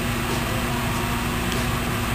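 Steady background hum and hiss of the room and recording, with one constant low tone and a low rumble underneath, unchanging throughout.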